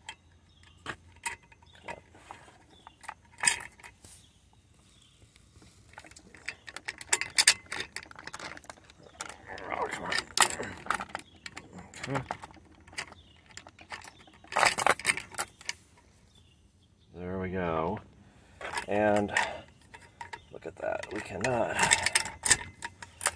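Heavy-duty steel chain links clinking and a steel padlock rattling against them as the chain is pulled tight and the padlock is fitted through the links. It comes in scattered bursts of metallic clanks.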